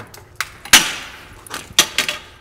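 A long metal pole knocked over and clattering onto a tile floor: a sharp crack with a ringing tail, then a second hit about a second later.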